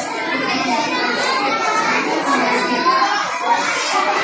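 Many children's voices talking and calling out over one another, a steady babble with no single speaker standing out.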